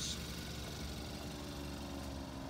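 A vehicle engine idling steadily, a low even hum.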